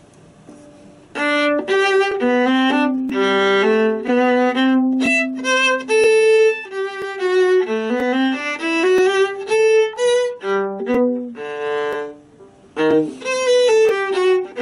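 Solo viola playing a lively gigue in 6/8, Allegro giocoso, as a single line of quick bowed notes. The playing begins about a second in and breaks off briefly near the end before carrying on.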